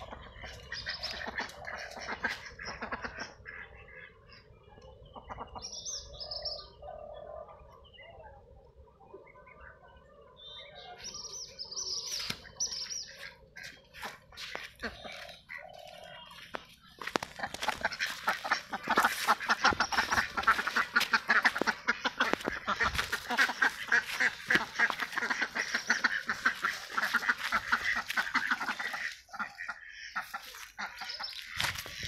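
Domestic ducks quacking: scattered calls for the first half, then a loud, dense run of rapid quacking from a little past halfway that stops just before the end.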